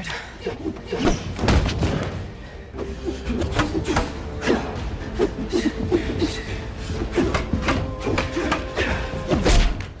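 Repeated knocks and thuds of a sparring bout, a wooden staff striking and being blocked bare-handed, with a heavier thud near the end, over dramatic score music holding a steady note.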